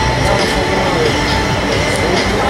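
Indistinct voices of players and spectators over a steady, heavy rumbling noise, with a faint steady tone running through it.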